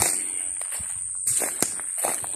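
Footsteps on a dry leaf-litter and gravel track, crunching, with sharp cracks at the start and about a second and a half in.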